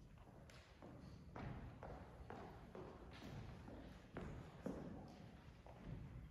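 Faint footsteps on a stage floor, about two steps a second.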